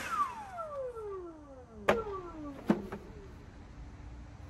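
Leaf blower just switched off, its whine falling steadily in pitch as it spins down, with two sharp clicks partway through.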